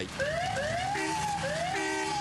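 Emergency vehicle siren, its pitch rising and falling over and over, with two short steady lower tones about a second in and near the end.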